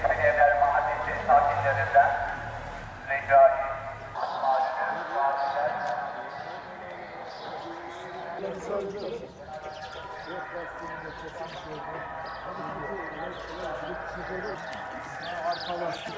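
Indistinct voices of people talking, loudest in the first few seconds, with few words clear enough to make out.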